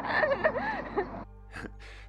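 A young woman's high-pitched, surprised vocal reaction, gasp-like with gliding pitch, over outdoor street noise. It cuts off suddenly a little over a second in, leaving only a quiet hum.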